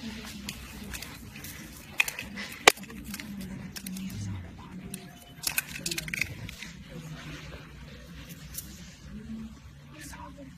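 Muffled, indistinct voices of people crowded together, with rustle of a handheld phone rubbing against clothing. Two sharp clicks about two seconds in, the second the loudest, and a short stretch of crackling rustle in the middle.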